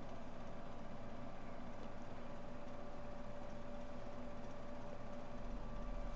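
Steady room tone: a low, even hum with a faint constant whine.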